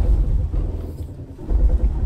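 Toyota Tacoma pickup truck's engine running at low speed as the truck crawls over a rock, a deep rumble that swells near the start and again about a second and a half in.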